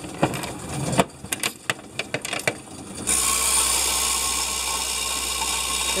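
Coins clicking and clattering as they are pushed into a coin-counting machine's slot. About three seconds in, the machine's motor starts and runs with a steady whir and low hum as it counts the coins.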